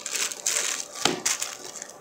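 A metal fork cutting into a soft, moist chocolate banana cake on a ceramic plate: light scraping and small clicks, with one sharper tap of the fork about a second in.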